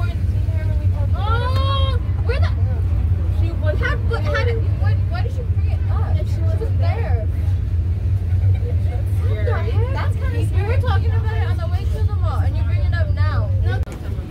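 Indistinct chatter from a small group of girls over a loud, steady low rumble that cuts off suddenly near the end.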